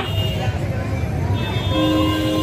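A low steady rumble with background voices. A held, horn-like tone comes in near the end.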